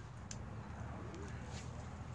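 Quiet outdoor background: a low, steady rumble with two faint clicks, one shortly after the start and one about a second and a half in.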